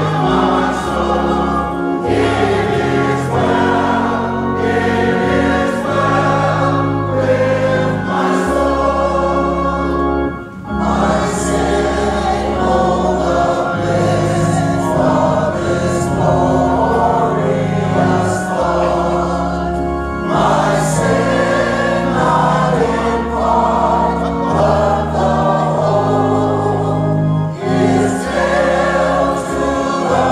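Church choir singing a gospel hymn, with instrumental accompaniment holding long low bass notes beneath the voices.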